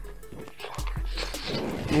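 Close-up bite into and chewing of a lettuce wrap, with wet clicks and a crunchy crackle of lettuce about a second in, ending in a pleased "mm". Background music plays underneath.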